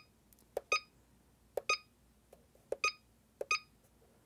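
Cellpro PowerLab 8 charger's front-panel buttons being pressed while it is set up for a regen discharge: each press is a soft click followed by a short high beep from the charger, about one a second, five times.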